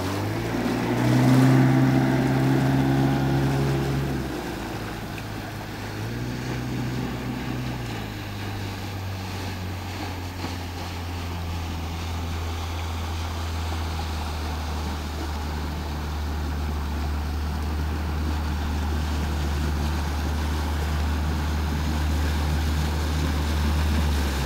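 Outboard motor of a small speedboat running under way at speed. Its note is higher and loudest in the first few seconds, drops, rises again briefly around seven seconds in, then settles into a lower steady drone that grows gradually louder toward the end.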